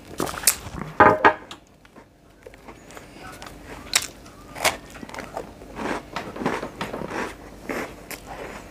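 Close-up biting and chewing of a cake rusk, a soft toasted cake snack, with scattered sharp clicks from the mouth and a louder knock about a second in.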